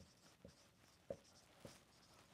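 Dry-erase marker writing on a whiteboard: a faint scratch of the tip with about four short taps as letters are drawn.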